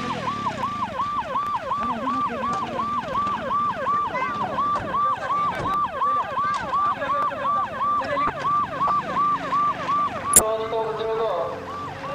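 Electronic siren sounding in fast, even pulses of a rising-and-falling tone, about three a second. A sharp click comes near the end, after which the tone changes to a steadier sound.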